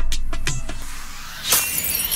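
Electronic TV station ident music: the beat drops away, a rising sweep builds, and a bright crash-like hit lands about a second and a half in.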